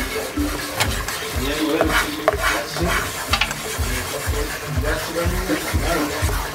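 Wooden spoon stirring a butter-and-flour roux in a non-stick frying pan, with a light sizzle and a few sharp scrapes and clicks. Background music with a steady beat, about two beats a second, plays throughout.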